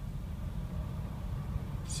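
Steady low rumble of a 2003 Chevrolet Suburban driving, heard inside the cabin: engine and road noise at low revs, around 1,200 rpm.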